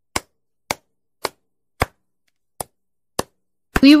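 Hammer-blow sound effect in an animation: sharp single knocks about two a second, seven in all, with one slightly longer pause midway.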